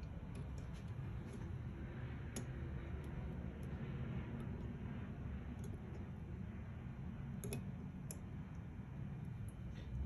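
Faint, scattered light clicks of small metal parts as a choke lever linkage bar is worked into place against its springs on a Keihin CV carburetor rack, over a steady low hum. The clearest clicks come about two and a half seconds in and again near the end.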